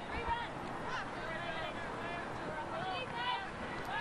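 Short, scattered shouts and calls from footballers on the pitch over a faint, steady stadium background.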